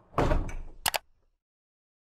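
Logo sound effect: a noisy swoosh that peaks in a thud-like hit, then a short sharp click just under a second in, after which it cuts off to silence.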